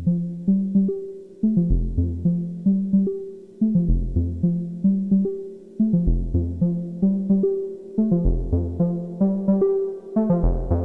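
Electronic music played on a Roland SYSTEM-8 synthesizer: a sequenced pattern of short, quickly fading synth notes, about three or four a second, with a deep bass note every two seconds or so.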